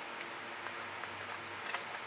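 Steady background hiss with a few faint, brief clicks and taps as a plastic paint squeeze bottle is picked up and handled.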